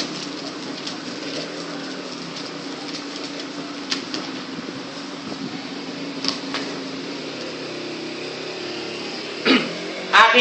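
Steady hum of an electric wall fan running, with a few light clicks and rustles over it and a short louder sound just before the end.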